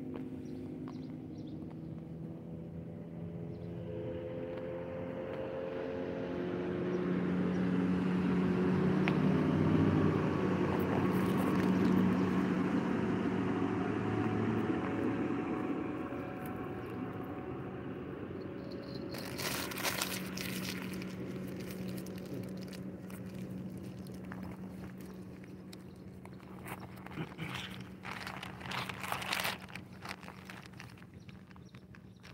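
A motorboat passing on the river: its engine hum grows louder, peaks about ten seconds in, then slowly fades. Clusters of close crunching clicks come about two-thirds of the way through and again near the end.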